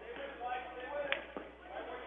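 Faint gymnasium background of distant voices and crowd murmur, with one sharp knock about a second in.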